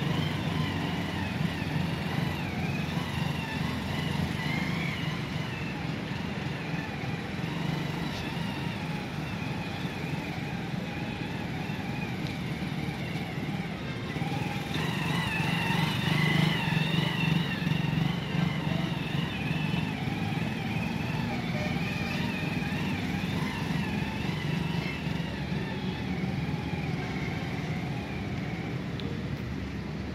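Small commuter motorcycle engine running at low speed, its pitch rising and falling with the throttle as it turns slowly through a figure-eight. It is loudest about halfway through, as it passes close by.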